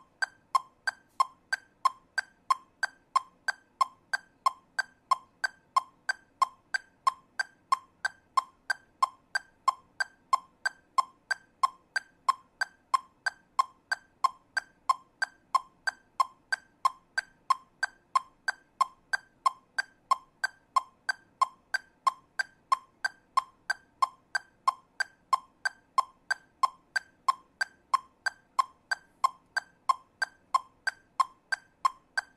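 Metronome clicking at 92 beats per minute, subdivided into eighth notes: two clicks to the beat, about three evenly spaced clicks a second.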